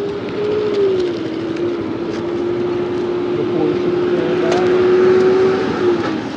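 Motorcycle engine idling steadily, its pitch dipping slightly about a second in, with street traffic around it.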